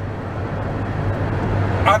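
Steady road and engine noise inside a moving car's cabin: a low hum under an even rush of tyre and wind noise.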